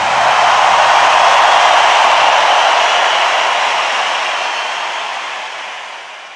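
A loud, steady rushing noise, like static, with its weight in the middle pitches. It fades out gradually over the last few seconds.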